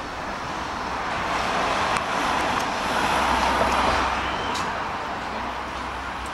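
A vehicle passing, a rushing noise that swells to its loudest about three and a half seconds in and then fades, over a steady low hum.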